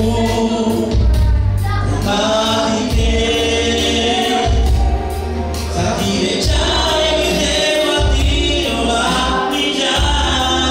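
A woman sings a gospel song over an electronic keyboard playing held bass notes and a steady beat, amplified through a PA.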